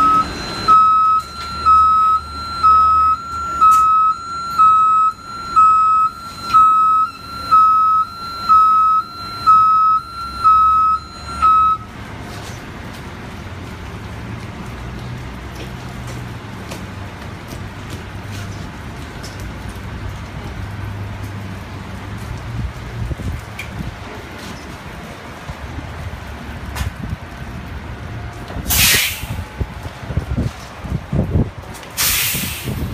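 NABI 60-BRT articulated CNG bus's warning beeper sounding about once a second, about a dozen beeps, over the low running of its Cummins-Westport ISL-G engine. The beeping stops about twelve seconds in, leaving the engine's steady low rumble, and near the end comes a short loud burst of air hiss.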